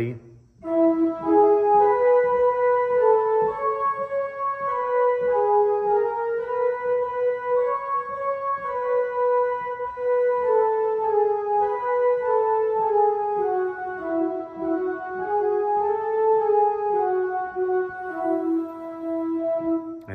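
A hymn tune's melody played as a single line of held notes on an organ with a flute-like tone, moving mostly by step at an even pace.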